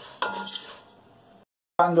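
A wooden spatula stirring dry rice and diced onion in an aluminium pot, scraping and knocking against the metal, while the rice toasts over high heat. The sound fades and cuts off suddenly about one and a half seconds in.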